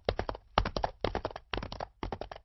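A sound effect of quick, sharp taps or knocks falling in short clusters, about two clusters a second.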